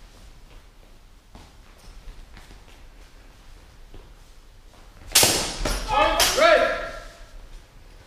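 Faint taps and steps, then about five seconds in a sudden sharp crack of a sword blow in a longsword bout, followed by loud shouting for about two seconds.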